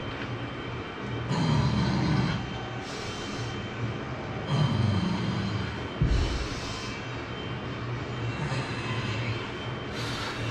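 A man doing heavy barbell back squats, with two loud, strained breaths as he works through reps, about a second in and again near the middle, and a heavy thump about six seconds in.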